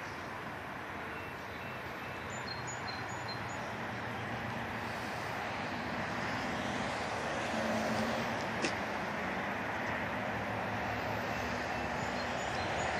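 Chevrolet S10 pickup's engine idling with a steady low hum, slowly growing louder. There is one sharp click about two-thirds of the way through.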